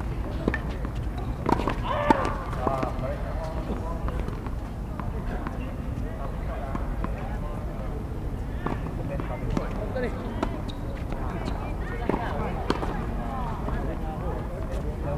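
Tennis ball knocks: single sharp hits of a ball on racket strings and on a hard court, scattered through, the loudest about two seconds in and more near the end as a point is played.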